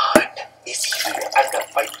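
Water poured from a plastic filter pitcher into a drinking glass, splashing into the glass after a sharp knock near the start.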